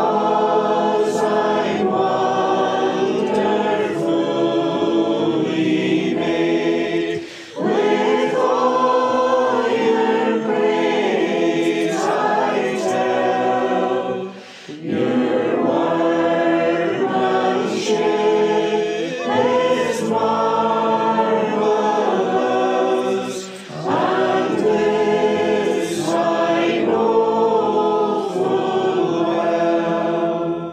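A congregation sings a metrical psalm unaccompanied, in slow, sustained phrases. The verse comes as four long lines, with a short breath between each.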